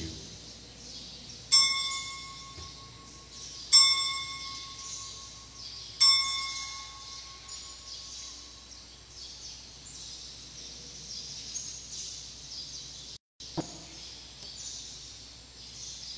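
Altar bell struck three times, about two seconds apart, each strike ringing with a clear high tone and fading away. The ringing marks the elevation of the host at the consecration.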